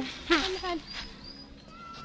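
A short vocal sound from a woman about a third of a second in, followed by faint, thin, high whistling tones.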